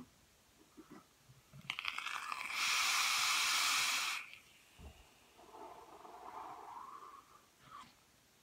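A draw on an e-cigarette box mod: a few brief crackles, then a steady hiss of air drawn through the atomizer for about a second and a half that stops cleanly. A softer breath out follows near the end.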